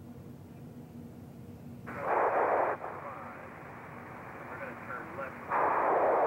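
Two bursts of radio static hiss on the space shuttle's air-to-ground radio loop, each cutting in and off abruptly: the first about two seconds in and under a second long, the second starting near the end.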